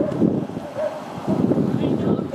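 Wind buffeting the microphone, with people's voices talking faintly underneath.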